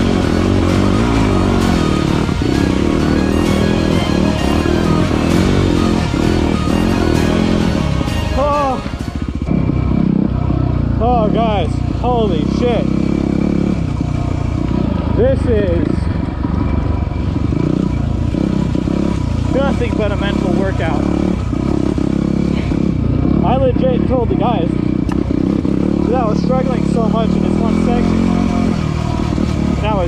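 Music for about the first nine seconds, then a Yamaha WR250R's single-cylinder four-stroke engine picked up close at the handlebars. The engine revs up and falls back again and again while the bike climbs a rocky trail.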